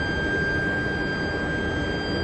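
A pipe induction annealing line running: a steady high-pitched whine with fainter overtones over constant machinery noise.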